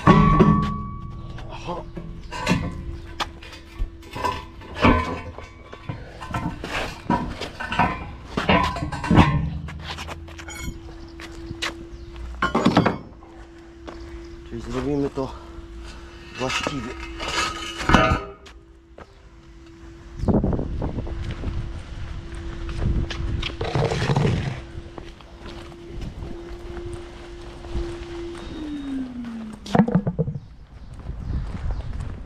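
Cast-iron manhole covers being handled on block paving: repeated metal clanks and knocks as a cover is lifted off and set down. Under them runs a steady machine hum that drops in pitch near the end.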